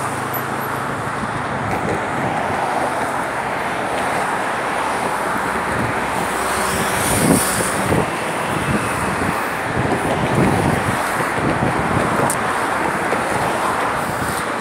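Steady road traffic noise, a continuous wash of passing cars on the bridge roadway.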